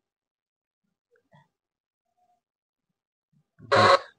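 Near silence, then near the end one short, loud, grunt-like vocal sound lasting about a third of a second.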